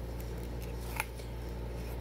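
Baseball cards being set into a small wooden card stand, with one light click about a second in, over a low steady hum.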